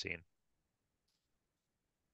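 A man's voice trails off on a last word, then near silence, with only a very faint click about a second in.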